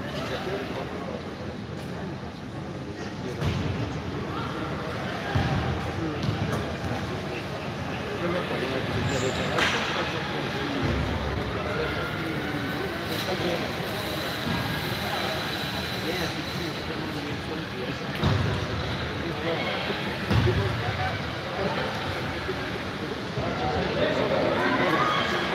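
Power wheelchair football in play: a steady hubbub of players' and spectators' voices, with about six dull thuds spread through it as the ball is struck by the chairs' foot guards.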